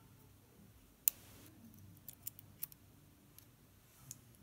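Steel tweezers clicking against the metal of a round lock cylinder as small pins are picked out of it. There is one sharp click about a second in, then a few lighter ticks.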